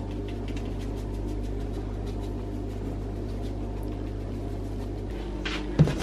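A steady low mechanical hum, like a kitchen appliance's motor running, that cuts off about five seconds in, with a few faint light taps over it.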